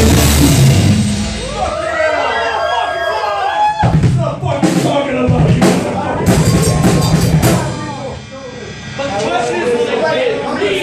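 An amplified heavy metal band's music cuts off about one and a half seconds in, and voices follow in the room. Then for a few seconds come loose drum hits and amplified guitar and bass sounding between songs, before voices return near the end.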